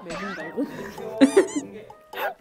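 Korean variety-show audio: speech over background music, with a short, very high-pitched squeal about a second in.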